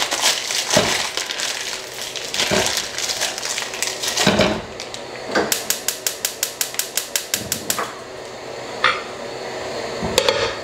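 Plastic wrapping crinkling as a frozen, rock-hard lump of beef is handled and dropped into a nonstick frying pan with a hard knock. Then comes about two seconds of rapid, even clicking, about five a second, from the gas range's burner igniter, and a pan lid knocks on near the end.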